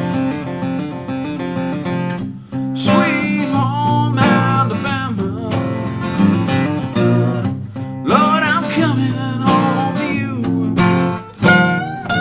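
Solo steel-string acoustic guitar played by hand, mixing strummed chords with picked single-note lines, some of the notes bent in pitch.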